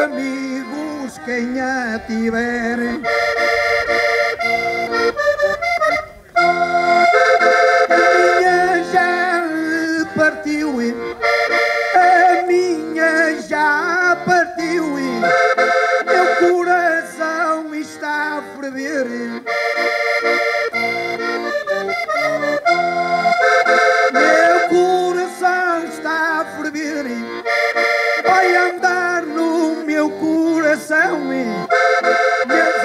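Accordion playing a lively traditional Portuguese folk tune in a cantares ao desafio style, repeating the same phrase about every eight seconds.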